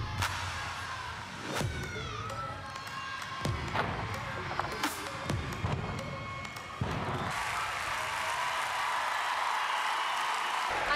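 Gymnast's landings and steps thudding on the sprung floor, several separate strikes over the first seven seconds, over floor-exercise music. From about seven seconds in, an arena crowd cheers and applauds steadily as the routine ends.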